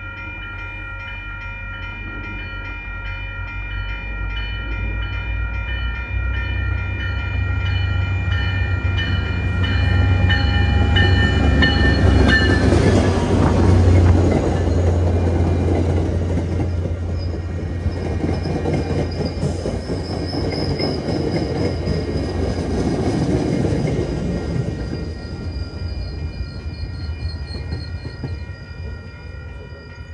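MBTA diesel commuter train passing a grade crossing: a deep engine rumble and the rush and clatter of the coaches swell to a peak about halfway through, then fade away. The crossing's warning bell keeps ringing steadily throughout.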